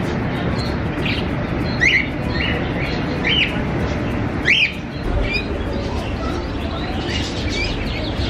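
Budgerigars chirping: a run of short, sharp chirps, the loudest about two and four and a half seconds in, over steady low background noise.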